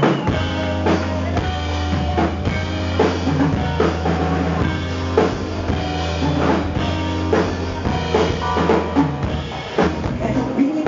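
Live soul band playing the instrumental opening of a song, before any singing: a drum kit keeps a steady beat over a bass guitar line.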